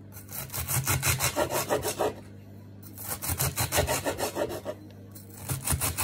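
Kitchen knife chopping a leek on a wooden board: quick runs of repeated cutting strokes, several a second, broken by two short pauses.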